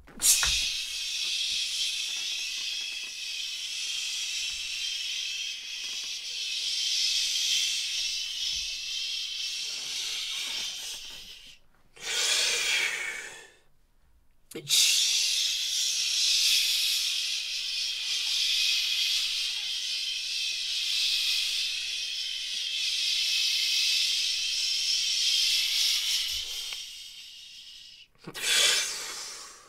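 A man's long, forceful hissing exhales as part of a breath-taxing challenge. The first runs for about eleven seconds, then comes a short gasping breath in and a moment's pause, then a second hiss of about twelve seconds that fades near the end.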